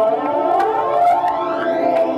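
Roland keyboard synthesizer playing electronic music: a layered tone sweeps steadily upward in pitch, reaching its top near the end.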